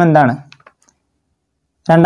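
A man narrating in Malayalam, his phrase ending about a quarter of the way in, followed by a few faint clicks and then about a second of dead silence before he speaks again near the end.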